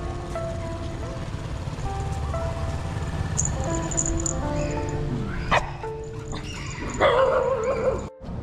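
Background music with held melodic notes, over which a dog barks twice: a short sharp bark about five and a half seconds in and a longer, louder one near the end.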